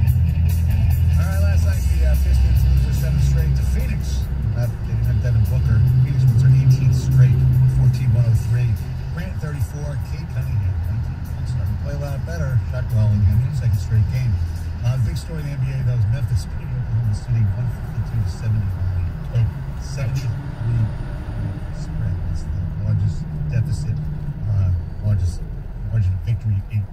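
Car radio playing through the car's speakers inside the cabin: voices over music, bass-heavy and muffled, a little louder for the first eight seconds or so.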